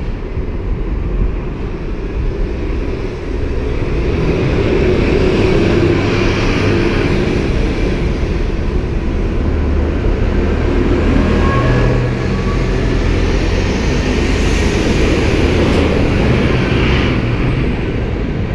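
City transit bus pulling away from the curb and driving past close by: engine running under load with a rumble that swells a few seconds in, and a faint whine rising in pitch around the middle as it picks up speed.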